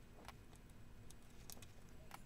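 Near silence with a few faint clicks, the clearest about one and a half seconds in: wires or components being pressed into a solderless breadboard.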